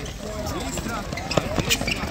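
Several players' voices calling out over one another, with sharp knocks of handballs bouncing on the hard court, the loudest two in the second half.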